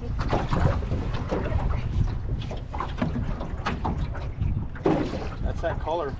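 Wind buffeting the microphone and water moving around a small flat-bottom boat on open water, a steady low rumble with a few short knocks.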